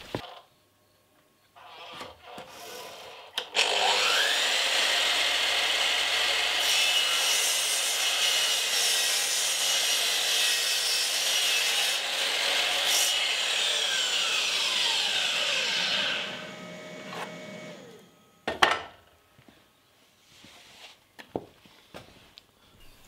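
DeWalt sliding mitre saw whining up to speed, then cutting through a piece of wood for about twelve seconds. Its blade then winds down with a falling pitch, followed by a single knock.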